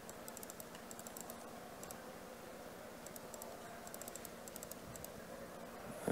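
Faint computer keyboard typing: short runs of quick key clicks with brief pauses between them.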